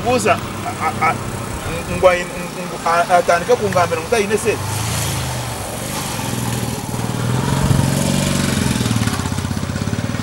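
Small motorcycle passing close by, its engine getting louder to a peak about eight seconds in, then fading away.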